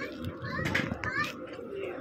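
Background chatter of diners, with high children's voices rising above it.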